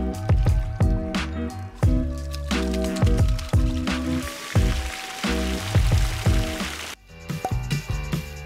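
Background music with a steady beat, dipping briefly about seven seconds in.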